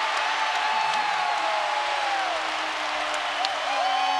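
Basketball arena crowd cheering and applauding after a home-team basket, a steady roar with long, drawn-out yells over it.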